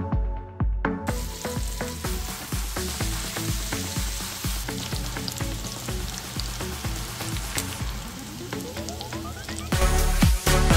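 Sliced beef kielbasa frying in a skillet, a steady sizzle that starts about a second in, under background music with a steady beat.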